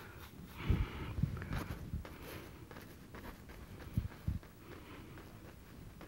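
Faint handling sounds as a brush works oil paint on a wooden palette: soft rustling with a few dull low knocks about a second in and again around four seconds.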